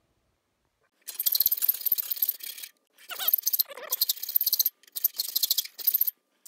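Hand file working the steel jaw of a pair of Knipex parallel-jaw pliers clamped in a bench vise, in three long bouts of filing starting about a second in. The jaw is being filed down further so it will fit around a rivet.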